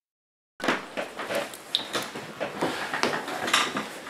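Silence, then from about half a second in a continuous run of small clattering knocks and clicks over a rustle, like objects being handled and set down.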